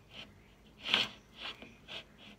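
A person's short breathy sounds through the nose and mouth, four quick puffs about half a second apart, the one about a second in the loudest.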